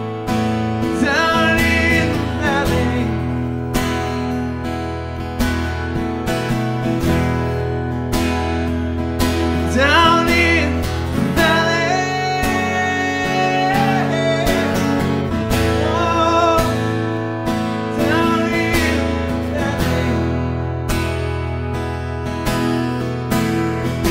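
Strummed Martin OM-28e Retro acoustic guitar with a man singing wordless vocal lines over it, holding one long note around the middle.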